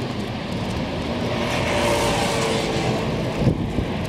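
Street traffic: a motor vehicle passes, its engine and tyre noise swelling and fading over about two seconds, with a brief thump shortly after.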